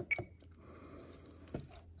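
Faint clicks of an RC transmitter's buttons as a menu key is pressed, with a short high beep just after the first click and another click about one and a half seconds in.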